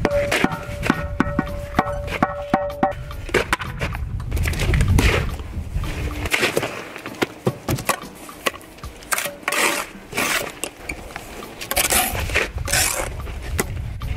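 Steel mason's trowel working mortar on stone: a run of sharp taps and knocks, with a ringing tone for the first few seconds, then rasping scrapes as mortar is spread and struck off along the stone.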